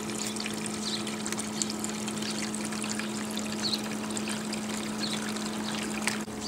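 Water trickling steadily over a low, even hum: the cooling water circulating through the distillation condenser and running back into a plastic barrel reservoir.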